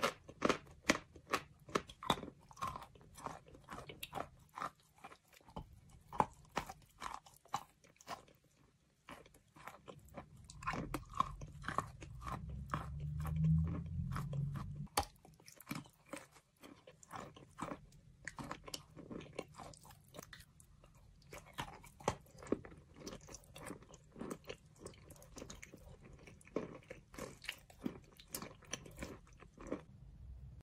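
Close-up chewing and biting of chalk: many small, crisp crunches in quick irregular succession, with a stretch of low rumble near the middle.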